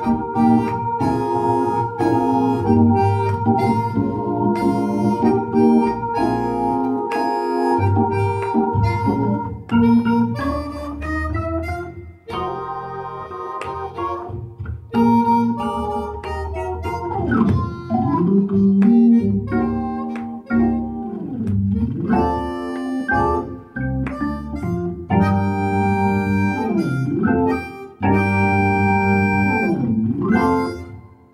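Hammond New B3 digital organ and chromatic harmonica playing a soulful, bluesy duet: the organ holds full chords while the harmonica carries the melody. Several notes slide down and back up in pitch in the second half.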